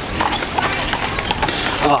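Horse hooves clip-clopping on the pavement, a steady run of hoofbeats.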